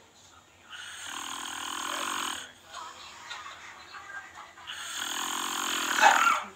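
A sleeping man snoring: two long snores, each about a second and a half, one about a second in and one near the end.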